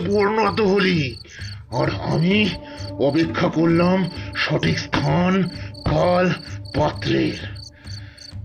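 Crickets chirping steadily under a man's voice in short, rising-and-falling phrases.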